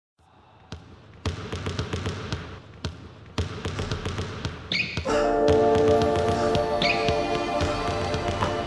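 Basketballs bouncing on a hardwood gym floor in an uneven rhythm of sharp thuds. About five seconds in, a music track with sustained chords enters under the bouncing, and a few short high squeaks, typical of sneakers on the court, come in with it.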